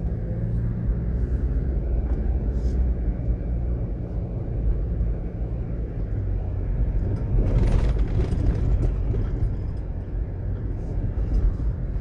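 Steady low rumble of road and engine noise from a car driving on a highway. A louder rush of noise comes about seven and a half seconds in and lasts about a second.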